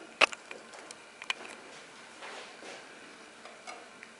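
Small plastic lab containers being handled: one sharp click just after the start, a second strong click about a second later, and several lighter clicks and taps. A brief soft rustle follows, with one more click near the end, over a faint steady hiss.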